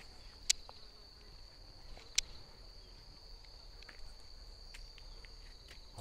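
Insects calling outdoors: a faint, steady high-pitched trill, with two sharp ticks, about half a second and a little after two seconds in.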